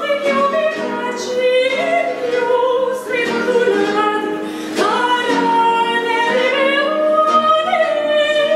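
A woman singing a baroque aria in operatic style, with long held notes, vibrato and slides between pitches, over a harpsichord accompaniment.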